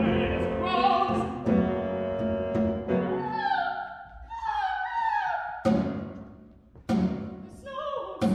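Live opera music from a small chamber ensemble with piano, sustained chords in the first half, then a voice singing in bending, wavering lines from about three seconds in. Two sharp percussion strikes fall near the end.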